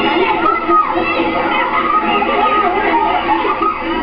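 A crowd shouting and calling out all at once, many high-pitched children's voices among them, a dense and steady clamour with no single voice standing out.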